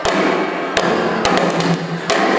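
Live band playing an instrumental passage without vocals, with several sharp drum and cymbal hits over a dense, loud band sound.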